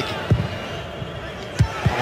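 Steady stadium crowd noise with a few deep, booming thumps: one about a third of a second in and two close together near the end.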